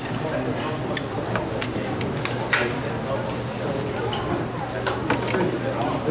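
Indistinct murmur of voices in a lecture room, with scattered sharp clicks and knocks and a steady low hum underneath.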